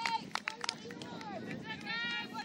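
Women footballers' voices shouting and calling across an outdoor pitch, several high calls overlapping, with a few sharp clicks in the first second.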